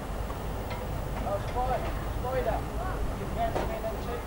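Unintelligible voices of people talking at a distance, over a steady low outdoor rumble.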